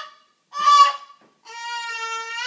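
A toddler's high-pitched squeals: a short one about half a second in, then a long held one starting near the end, its pitch wavering slightly.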